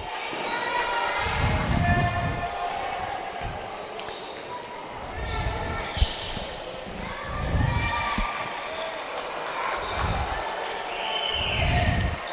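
Basketball game sounds in an echoing gym: a ball bouncing on the hardwood floor, scattered voices of players and spectators, and a sharp knock about six seconds in.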